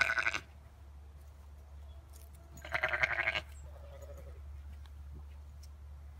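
Zwartbles sheep bleating twice: a short bleat right at the start and another, about a second long, about three seconds in. A steady low hum runs underneath.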